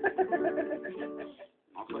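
Acoustic guitar being picked: a run of single notes over chords. It breaks off briefly about one and a half seconds in, then starts again.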